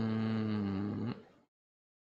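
A man's low, drawn-out hum, "mmm", held on one pitch for about a second, then dipping and fading out.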